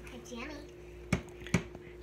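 Two sharp taps about half a second apart, from a spatula knocking against a plastic food container as it pushes in thick cream mixture. A child's voice is heard softly at the start, over a faint steady hum.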